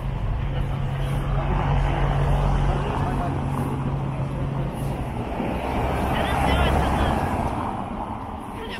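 Road traffic: a vehicle engine running with a steady low hum for about the first five seconds as cars drive by on a cobbled roadway, with voices of passers-by over it.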